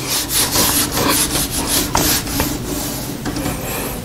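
Whiteboard marker rubbing across a whiteboard in quick, uneven strokes as figures and lines are written.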